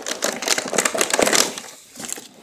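Cardboard box insert and packaging crackling and crinkling as hands work toy cars out of it, a dense run of small clicks and crackles that dies down about one and a half seconds in.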